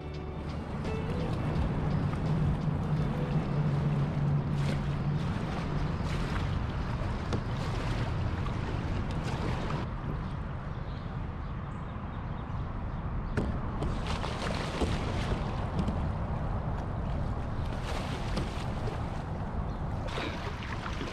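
Kayak on a river: steady rushing of water with wind on the microphone, broken by scattered short knocks and splashes.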